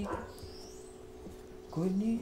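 A man's voice singing softly: a held note just at the start, then a rising note near the end, with a quiet gap between.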